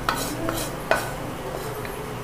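Wooden spatula scraping a roasted dry chammanthi mixture out of a pan into a steel mixer-grinder jar, with a few sharp taps of wood on the metal, the loudest about a second in.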